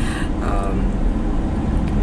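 Steady low road and engine rumble of a car being driven, heard from inside its cabin.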